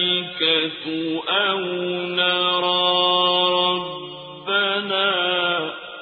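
Quranic recitation chanted in Arabic by a solo reciter: long held melodic notes with ornamented turns at the starts of phrases and short breaks between them, fading out near the end.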